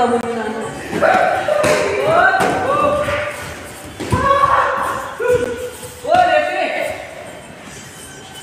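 Taekwondo sparring: kicks thudding against padded chest protectors several times, each with a short, sharp shout from a fighter.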